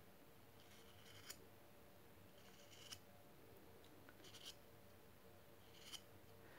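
Faint scrapes of a knife blade shaving a small piece of wood, about four short strokes spaced a second or two apart, in near silence.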